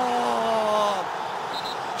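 A football commentator's drawn-out, held shout for a goal, one long note sliding slowly down in pitch and ending about a second in, over the steady noise of a stadium crowd.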